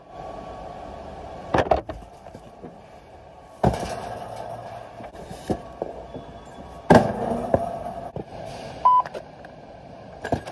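Knocks and clatter of items and a picking cart being handled, the loudest about seven seconds in, over a steady background hum. About nine seconds in a handheld barcode scanner gives one short high beep.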